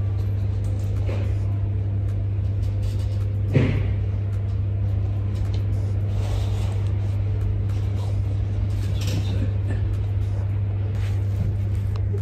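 Steady low hum at one fixed pitch, from building machinery, with faint voices in the background and a single soft knock a few seconds in.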